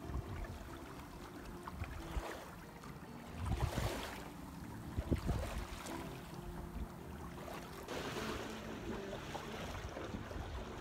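Water splashing and lapping against the hull of a Sea Pearl 21 sailboat under way in light wind, with wind on the microphone; louder rushes come about three and a half and five seconds in.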